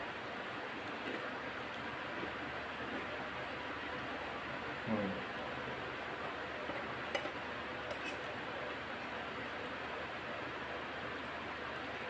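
Chewing a mouthful of rice and crunchy tortilla chips over a steady hiss, with a couple of faint clicks of a metal spoon on the bowl about seven and eight seconds in.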